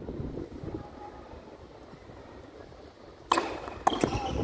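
Tennis ball bouncing on the hard court and then struck with a racket: two sharp knocks about half a second apart near the end, the first the louder, over a low outdoor background hum.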